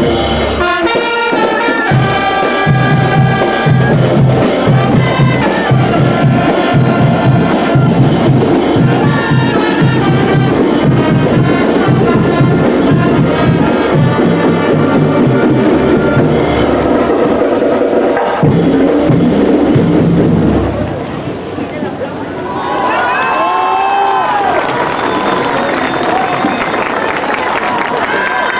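Marching band of clarinets, trumpets and sousaphones with drums playing a tune over a steady beat, which ends about 20 seconds in. After it, a crowd's voices and cheering.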